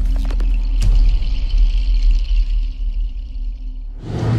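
Logo-intro music sting: a deep, sustained bass rumble with a few sharp hits in the first second and a steady high shimmering tone, easing off near the end.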